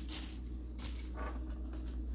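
Faint rustling and handling of a small cloth trench coat for a one-sixth-scale action figure, a few soft scuffs, over a steady low hum.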